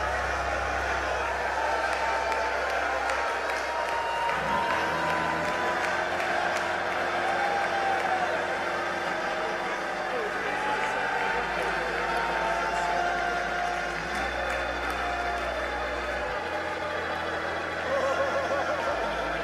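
A congregation praising aloud: many voices calling out at once, with some clapping, as a steady crowd wash. Underneath, sustained low keyboard chords change every few seconds.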